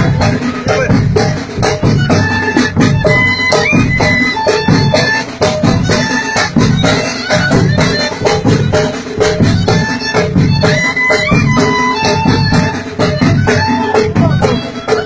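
Traditional folk music played with a steady, fast drum beat under a high held melody line, loud and continuous.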